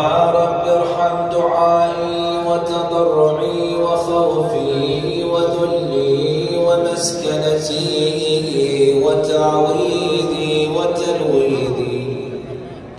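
A man chanting an Arabic prayer in long, drawn-out melodic phrases, each note held and ornamented, in several phrases with short breaths between them.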